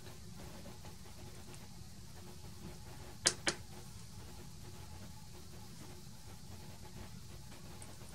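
Steady low room hum, with two sharp clicks about a fifth of a second apart a little past three seconds in, from a handheld transistor tester being worked as a MOSFET is locked into its test socket and tested.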